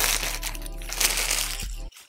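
Clear plastic garment packaging crinkling as it is handled, over background music. Everything cuts off abruptly near the end.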